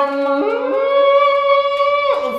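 A man belting one long, loud sung note; a second voice-like line glides up to join it about half a second in, and both cut off suddenly at the end.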